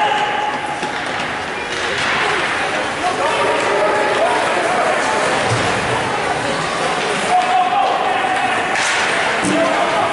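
Ice rink game noise: spectators' voices and shouts over a steady din, with knocks of the puck and sticks against the boards and a sharper knock about seven seconds in.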